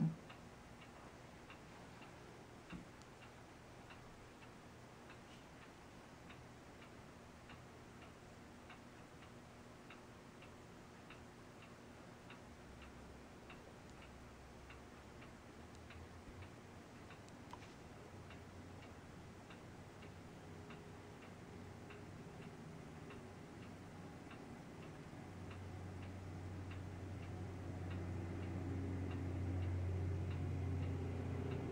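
Faint, even ticking of a clock, with a low hum that grows louder over the last few seconds.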